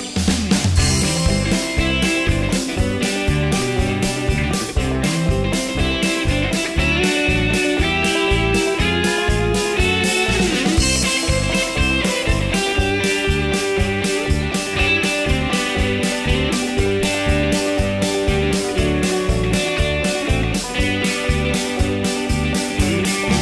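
Instrumental break of a folk-rock song: electric guitar and button accordion over bass and drums keeping a steady beat, with no vocals.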